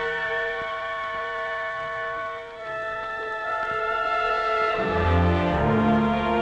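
Orchestral film score, with strings holding sustained chords that shift a few times. Low notes come in about five seconds in and the music swells louder.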